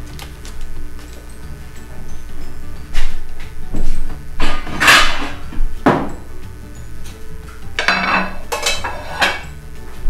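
A stainless steel mixing bowl being knocked and clattered as chicken pieces are handled in it: half a dozen separate knocks, the loudest about five seconds in, with light background music under them.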